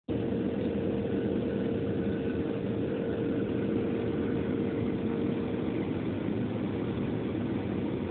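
Steady cabin noise of a Boeing 737-700 on approach, heard from a window seat: the jet engines and the rush of air over the fuselage blend into one even roar. A faint steady hum runs underneath and fades out about three quarters of the way through.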